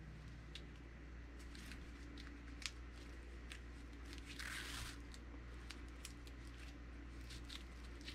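Faint handling sounds of a bungee cord being pulled through a nylon rope bridle loop: scattered light ticks and a short rustle of cord sliding about halfway through, over a low steady hum.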